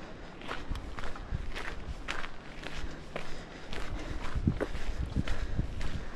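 Footsteps on a gravelly dirt trail, about two steps a second, picked up by a chest-mounted camera.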